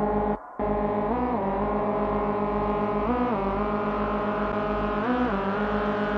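Instrumental breakdown of an electronic dance track in a DJ set: a sustained, horn-like synth chord that bends up in pitch and back about every two seconds over a pulsing bass. The music drops out briefly about half a second in.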